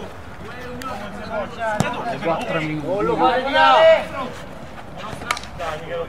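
Men's voices calling out across a football pitch, loudest around the middle, with a few sharp knocks of the ball being kicked.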